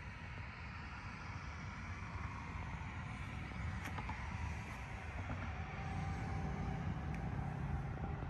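A motor vehicle engine running close by: a steady low rumble with a faint hum that grows slowly louder, with a few small clicks.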